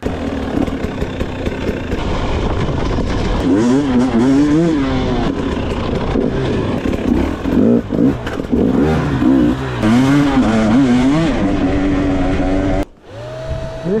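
Husqvarna two-stroke hard-enduro bike being ridden off-road, its engine revving up and down over and over with the throttle, heard close up from a camera on the bike. About a second before the end the engine sound cuts off suddenly and a quieter steady tone is left.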